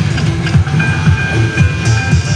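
Ainsworth Ultimate Livewire Firestorm video slot machine playing its electronic game music and sound effects as a spin resolves into a small line win. A run of low thuds is joined by steady electronic tones about a second in.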